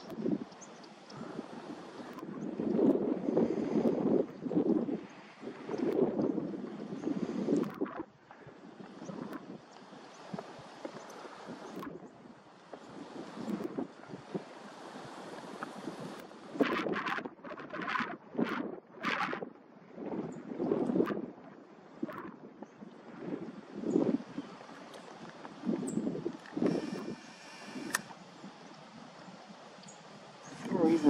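Wind buffeting the microphone in irregular gusts, with a few sharp clicks a little past the middle.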